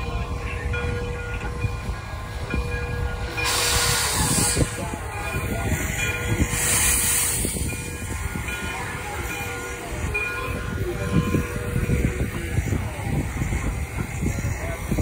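Frisco 1630, a 2-8-0 steam locomotive, working at low speed: a steady low rumble of wheels and running gear with scattered knocks, broken by two loud hisses of steam, one about three and a half seconds in and another about six and a half seconds in.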